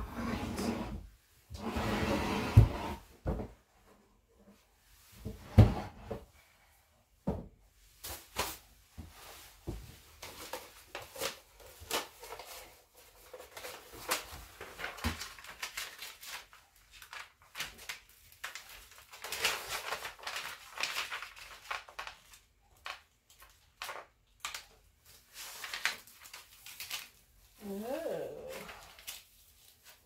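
Handling noise from a small wooden side table being worked on: irregular knocks and bumps as it is moved and tipped onto its side, with rubbing and scraping of hands over its paper-covered surface. A short whine-like sound comes near the end.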